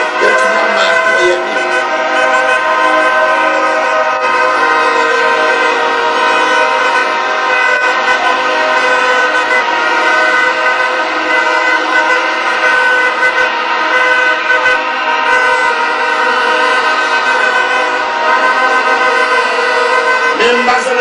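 Many horns blown together in a large crowd: a loud, dense drone of held tones that runs on without a break.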